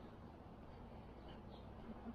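Quiet outdoor ambience: a faint steady low rumble with a few brief, faint bird chirps.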